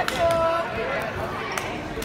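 Indistinct voices and shouts in a school gym, starting with a rising shout. There is a single sharp knock about one and a half seconds in.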